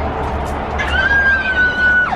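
A person's high-pitched excited squeal that starts about a second in and is held as one long note, over a steady low rumble.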